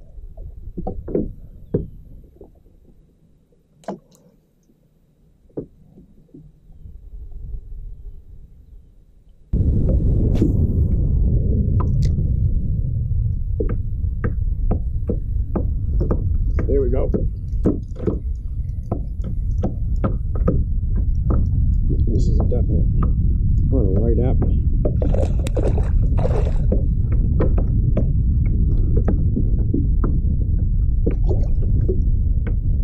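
Scattered knocks and clicks from the kayak and fishing gear. About nine seconds in, a loud, steady low rumble starts abruptly, typical of wind buffeting a GoPro microphone, and runs on with frequent clicks and knocks over it while the rod and reel are worked.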